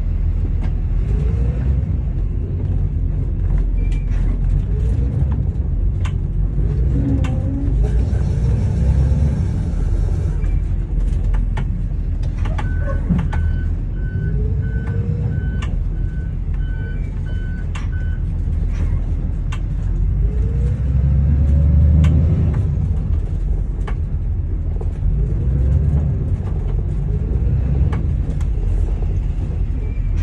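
School bus engine running with a steady low rumble while the bus is driven slowly around the lot, its pitch rising and falling with the throttle. In the middle, a repeating electronic beep sounds for about five seconds.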